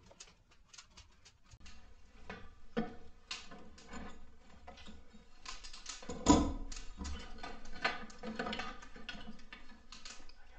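Temporary adjustable steel post being loosened and lowered from under a floor joist: a run of quick metal clicks and rattles from its screw and the wrench, with one heavier clunk about six seconds in.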